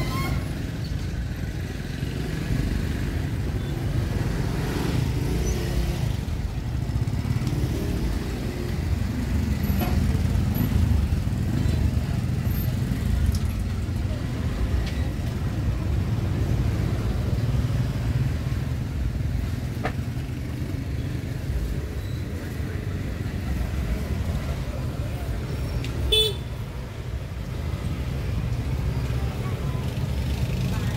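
Street-market ambience dominated by motorbike and scooter traffic, a steady low hum of engines passing along the street. A short sharp sound stands out near the end.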